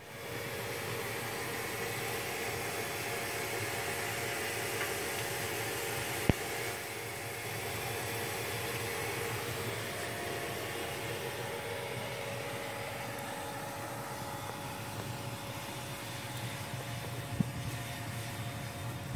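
Steady rushing noise with a faint low hum, and one sharp click about six seconds in.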